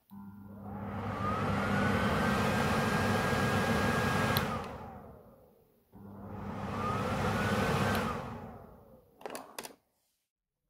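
Cooker hood fan motor (k42rp2213, four-wire) switched on twice by touching its leads to 220 V mains: each time it hums and spins up with a rising whine, runs steadily, then after a click of the contact breaking the whine falls as the fan coasts down. A few small clicks of the wires being handled near the end.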